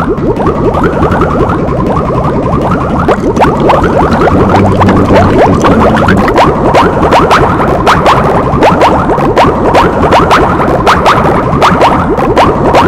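A dense, electronically layered mash of cartoon sound effects: many overlapping short rising bloops. About three seconds in, sharp clicks join and repeat several times a second.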